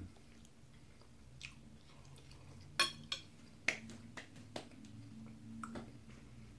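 A person chewing food close to the microphone, with wet mouth sounds and a few sharp smacks or clicks from about three seconds in.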